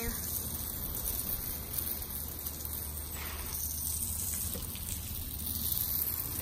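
Water spraying from a garden hose onto a lawn, a steady hiss.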